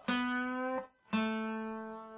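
Acoustic guitar played single-note: a plucked note on the G string bent up and cut short, then about a second in a second, slightly lower note is plucked and left to ring, fading slowly.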